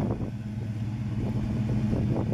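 The 1967 Oldsmobile Delta 88's 425 Super Rocket V8 idling steadily through its factory dual exhaust, a low even rumble.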